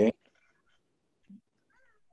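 A man's voice saying 'okay', then near silence, with a faint brief high gliding sound near the end.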